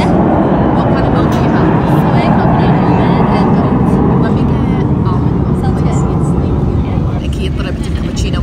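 Steady, loud low rumble of street traffic running close by, easing off a little near the end, with voices over it.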